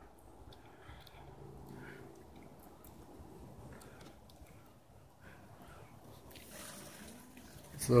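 Quiet outdoor background with a few faint clicks and a faint low hum for a couple of seconds; a man starts to speak right at the end.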